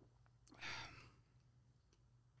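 A single sigh, a breath let out about half a second in and fading after about half a second, over the faint hum of a quiet room.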